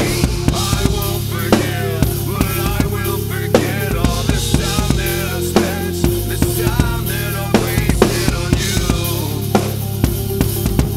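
A DW acoustic drum kit (kick, snare, toms and cymbals) played in a steady rock beat along with a recorded backing track, whose sustained bass and melody run under the drums. Heavier accented hits land about every two seconds.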